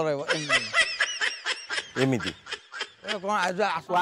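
High-pitched snickering laugh: a quick run of short giggling bursts over the first two seconds or so, followed by a man speaking.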